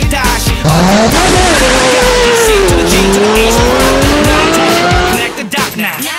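A long tyre-screech sound effect in the middle of a hip-hop track, starting under a second in and lasting about four and a half seconds, its pitch rising, dipping, then climbing slowly again before it cuts off, with the music continuing underneath.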